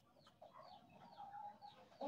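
Near silence, with faint bird chirps repeating in the background.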